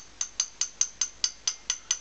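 A spoon tapped repeatedly against a cup, about five light taps a second, ten in all, each giving a short high ringing clink.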